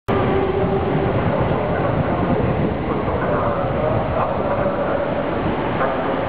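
Toyo Rapid Railway 2000 series electric train pulling into the station platform: a steady rumble of the train on the rails with a few held tones running through it.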